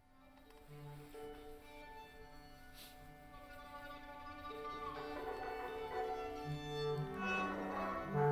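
A recording of contemporary chamber ensemble music starting: long held notes enter one after another and layer up, growing steadily louder.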